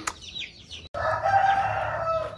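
Chicks peeping with short, high, falling calls, then, after a brief break about a second in, a rooster crowing once for just over a second.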